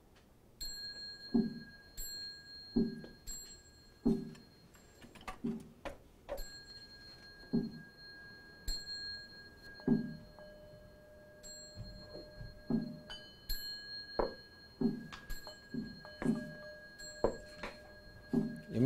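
Buddhist ritual percussion: a small bowl bell (yinqing) struck and left ringing, restruck a few times, over an even run of dull drum knocks about one every second and a half, pacing prostrations. A second, lower-pitched bell tone joins about ten seconds in.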